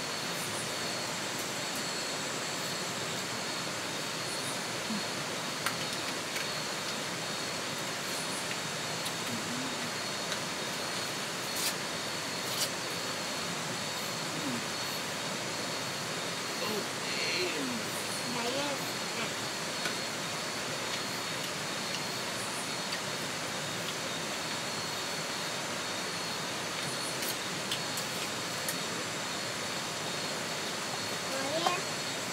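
Steady outdoor night ambience: an even hiss with a continuous high-pitched insect drone, broken now and then by light clicks of spoons on plates.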